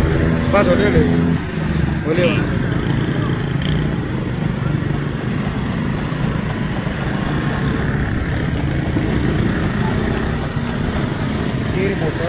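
Several small motorcycles running slowly together, a steady engine drone, with men's voices calling out in the first second or so and again about two seconds in.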